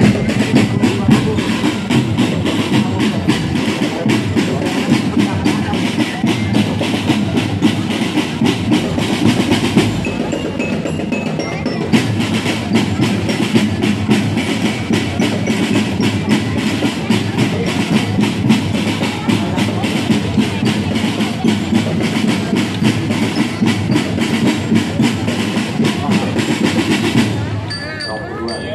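Marching bass drums and tenor drums played together in a fast, continuous drum-band rhythm, which stops shortly before the end.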